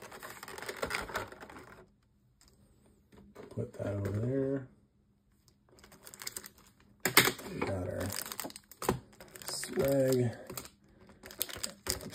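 Clicks and crinkling from a Pokémon TCG collection box's clear plastic insert and foil booster packs being handled, with a few short spoken words in between.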